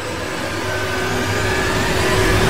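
Whoosh sound effect of a subscribe-button outro animation: a steady rushing noise that slowly builds in loudness, with a faint thin whine running through it.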